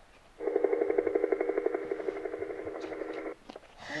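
My First Sony EJ-M 1000 toy picture-disc player playing its helicopter sound effect: a rapid, even rotor chop, starting about half a second in and cutting off suddenly near the end.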